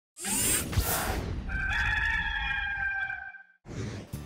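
A whoosh with a sharp hit, then a rooster crowing in one long call of nearly two seconds that drops away at the end, as a logo sound effect.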